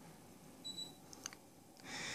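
A single short, high electronic beep about half a second in, the Fujitsu mini-split acknowledging a command from its remote, followed by a couple of faint clicks of the remote's buttons.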